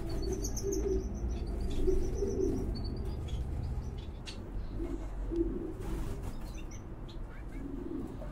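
Birdsong: low cooing calls repeated several times, with short runs of high thin chirping in the first few seconds.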